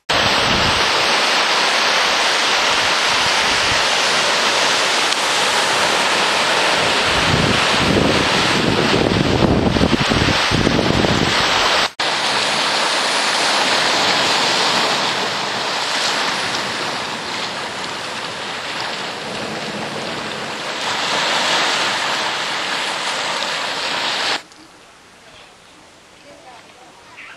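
Ocean surf and wind buffeting the microphone: a loud, steady rushing noise with gusty rumbling about eight to eleven seconds in. It breaks off for an instant about twelve seconds in, carries on the same way, and cuts off shortly before the end.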